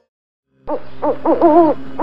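Spotted owlet calling: after a brief silence, a quick run of short, rising-and-falling chattering calls, the last one drawn out longer.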